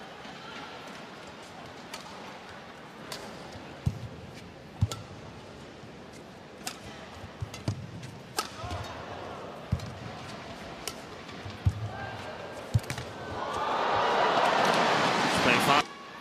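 Badminton rally: a string of sharp racket strikes on the shuttlecock, roughly one a second, with footfalls on the court. Near the end the rally is won and the crowd cheers and applauds, swelling loud for the last few seconds.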